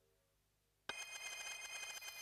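After a second of silence, a bright ringing tone made of several steady high pitches starts suddenly and holds for about a second.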